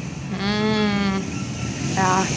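A person's voice holding one long drawn-out vowel, not a word, lasting about a second, over a steady low hum.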